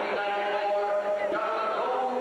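Several voices chanting or singing together in long held notes.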